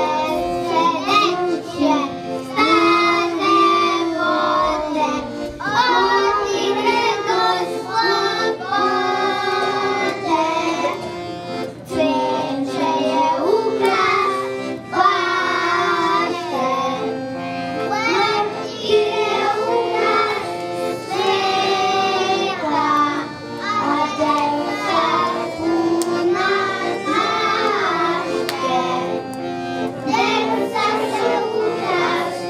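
A group of young children singing a song together, one girl singing into a handheld microphone.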